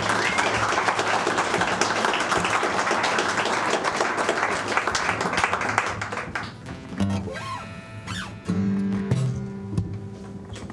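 Audience applauding for about six and a half seconds, dying away. A few held acoustic guitar notes are then plucked between songs.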